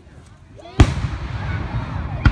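Aerial firework shell bursting with one loud boom a little under a second in, its noise trailing on afterwards.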